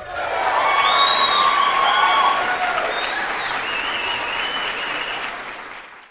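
A crowd applauding, swelling in at once and fading out near the end.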